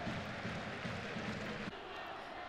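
Stadium crowd noise, a steady murmur from the stands, dropping to a quieter ambience near the end.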